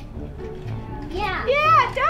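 Young children talking and calling out, faint at first and loud and high-pitched from about halfway through.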